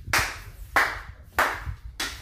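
Slow, steady hand clapping: three sharp claps about two-thirds of a second apart, each with a short echo off the room.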